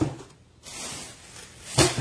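Cardboard shoebox being handled on a wooden table: about a second of rustling scrape, then a sharp knock near the end as the box comes down on the table.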